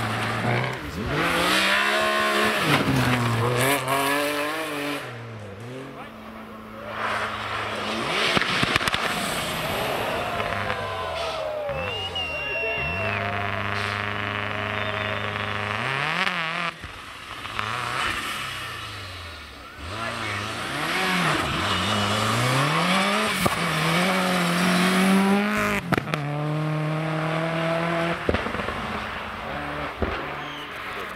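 Rally car engines at full throttle as cars pass one after another, the revs climbing and dropping sharply again and again with gear changes and lifts off the throttle. One of them is a Subaru Impreza rally car. About six seconds in, one car spins.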